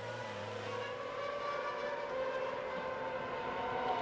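A Toyota TF108 Formula One car's 2.4-litre V8 engine running steadily at part throttle. Its note rises a little over the first couple of seconds, then holds.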